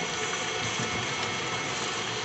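Electric kitchen mixer running steadily, its beaters whipping a thick Nutella and mascarpone pie filling.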